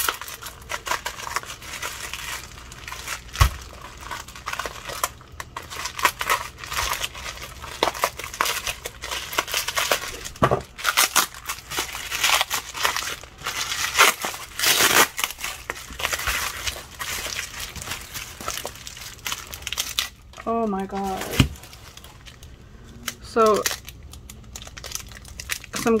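A plastic bubble-wrap package being handled and pulled open: a dense run of quick crackles and rustles for about twenty seconds, then much quieter near the end.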